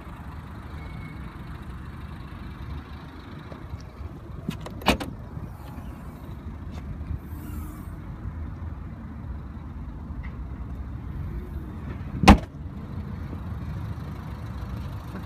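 Ford Focus 1.6 TDCi diesel idling steadily, with a sharp knock about five seconds in as the tailgate is opened and a louder slam about twelve seconds in as it is shut.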